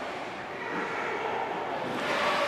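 Steady ice-rink background noise during hockey play: a continuous even hiss of skating and arena ambience, with no distinct impacts.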